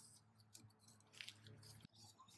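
Near silence: faint scattered ticks and rustles of a gloved hand handling a plastic oil filter housing cap and its rubber O-rings, with one sharper click near the end, over a low steady hum.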